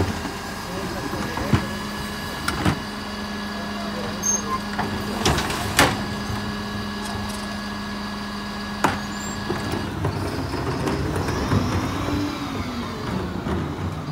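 Mercedes-Benz Econic bin lorry running with a steady hum while its Terberg OmniDEL rear lift tips a wheelie bin into the hopper, with several sharp knocks and bangs of the bin against the lift. The hum changes about ten seconds in.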